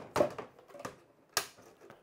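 Hard plastic parts of a Chitu Systems FilaPartner E1 filament dryer knocking and clicking as a roller module is fitted into its box: a sharp knock just after the start, a fainter tap, then a sharp click about a second later as the part snaps into place.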